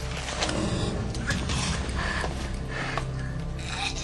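Metal mechanism creaking and clicking over a steady low hum, with music underneath.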